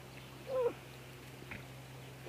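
A single short, high-pitched vocal call about half a second in, rising and then falling in pitch, with a faint click later.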